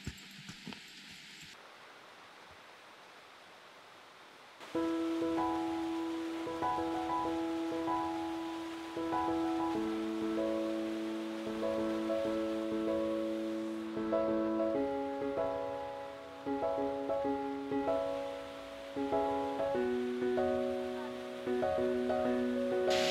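A faint steady rush of water, then from about five seconds in, background music of held notes in slowly changing chords plays over it.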